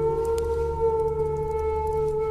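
Native American flute holding one long, steady note over a low background drone, in slow meditative music.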